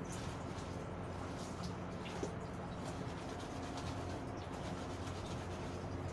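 Wet laundry being handled and wrung out by hand over a basin: cloth rubbing and squeezing, with scattered faint ticks, over a steady low hum.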